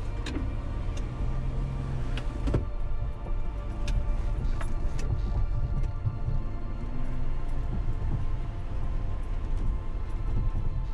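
Jeep Wrangler YJ engine running under load as it pushes into a deep mud hole, a heavy steady rumble with several sharp knocks in the first half. Background music underneath.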